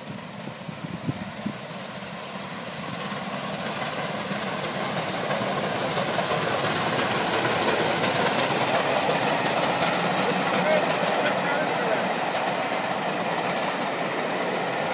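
Steam-hauled passenger train passing: the noise of the locomotive and coaches on the rails grows louder from about three seconds in and stays loud as the coaches roll by.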